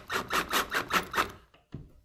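Battery-powered drill driving a plastic screw-in anchor into drywall: a grinding rasp pulsing about four times a second as the anchor's threads cut into the gypsum, stopping about one and a half seconds in.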